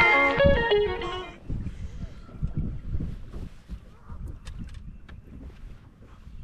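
Guitar intro music fades out about a second and a half in, leaving a low, uneven rumble of wind buffeting the microphone with a few faint clicks.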